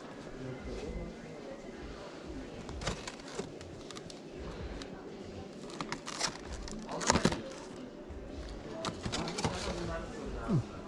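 Indistinct background voices in a busy shop, overlaid by sharp crackling clicks of a clear plastic item handled close to the microphone, in bursts around three, six, seven and nine seconds in, loudest around seven seconds.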